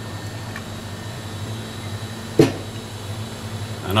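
Steady low machine hum filling a room, with one sharp click a little past halfway through.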